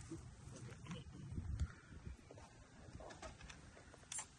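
Quiet outdoor background: a faint low rumble with a few faint, scattered clicks and chirps.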